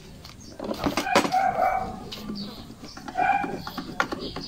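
Small metal clicks and knocks from a steel step grill being bolted onto a scooter's floorboard. Two short pitched calls sound in the background, about a second and a half in and again near three seconds.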